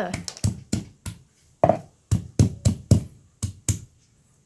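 Stone pestle pounding peeled garlic cloves on a wooden chopping board to crush them: a run of separate knocks, about three a second, with a short lull a little after the first second.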